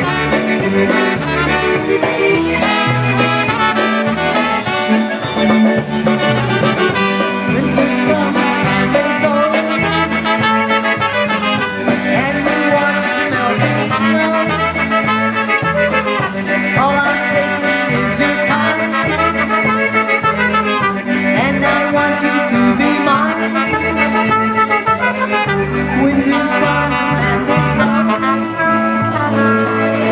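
Live band music led by two trumpets, with a concertina and a piano accordion, over drums and a steady repeating bass line.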